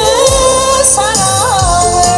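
A woman singing live into a microphone over amplified backing music with a steady bass beat; after about a second she holds a long note with vibrato.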